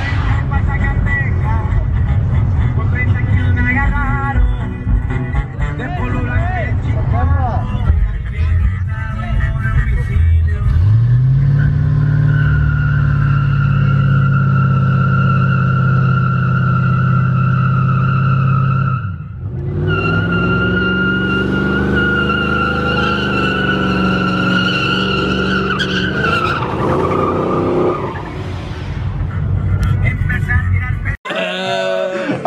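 Car doing a burnout: the engine revs up and is held at steady high revs while the tyres squeal loudly. The squeal breaks off briefly a little past halfway, then a second long squeal follows before the engine drops away.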